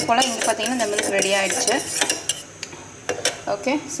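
Metal spoon stirring a milky drink in a mug, scraping and clinking against its sides, busiest in the first two seconds.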